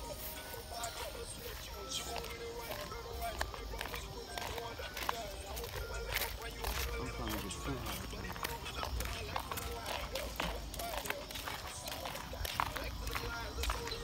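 Faint, indistinct voices and music in the background, with scattered clicks and rustles from a handheld phone being carried while walking, over a low rumble.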